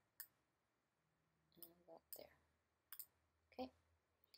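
Quiet computer mouse clicks, a few scattered sharp clicks against near silence, with brief faint muttering between them.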